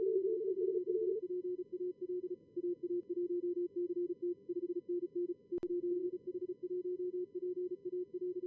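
Morse code (CW) from simulated calling stations in a contest logger's practice mode, keyed fast over faint receiver hiss. At first two signals at slightly different pitches overlap; after about a second a single tone of one steady pitch keys on and off alone. A single sharp click comes about five and a half seconds in.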